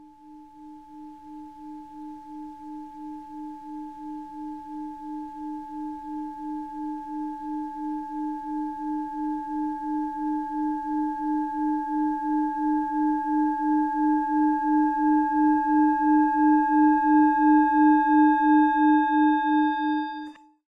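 A sustained ringing tone with a steady wobble of about two to three pulses a second. It swells gradually louder, gains higher overtones in its second half, and cuts off at the end.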